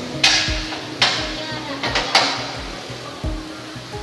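Four sharp metallic clanks with short ringing tails, from tools striking metal parts at a motorcycle's rear sprocket and swingarm during a sprocket-and-chain replacement. They fall in the first two and a half seconds, over background music with a steady beat.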